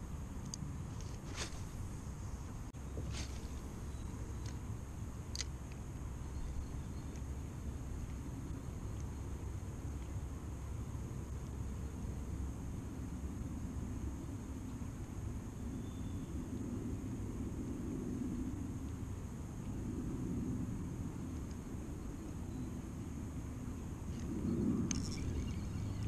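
Steady low rumble of wind on the microphone of a kayak-mounted camera, with a few sharp clicks in the first six seconds and a little more movement noise near the end.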